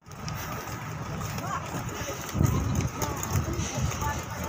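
Faint voices of people talking in the background over a low rumble on the microphone, which gets louder a little past halfway.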